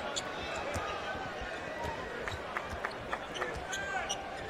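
A basketball bouncing on a hardwood court as it is dribbled, with short sneaker squeaks and a steady crowd murmur in the arena hall.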